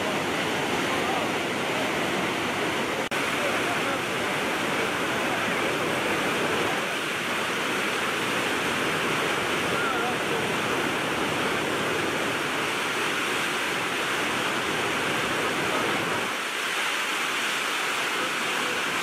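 Muddy floodwater of a swollen wadi rushing in a steady, loud torrent, with a brief dropout about three seconds in.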